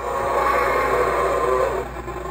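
Electronic roar from a battery-powered toy Tyrannosaurus rex, played through a small speaker inside the figure as its jaw is worked. The roar lasts nearly two seconds and fades out near the end; the secondhand toy's sound feature still works.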